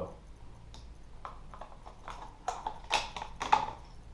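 Sharp plastic clicks and taps as a crankbait lure with treble hooks is handled and fitted back into its hard plastic package. There are a few scattered clicks at first, then a quicker cluster in the second half, the loudest about three and a half seconds in.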